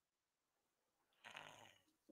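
Near silence, with one faint, short breath just over a second in.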